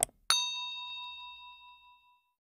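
A quick double click, then a single bright notification-bell ding that rings out and fades over about a second and a half: the sound effect of a subscribe animation's bell being clicked.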